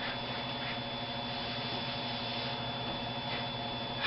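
Steady background hiss with a low electrical hum and a thin, high steady whine; no distinct event stands out.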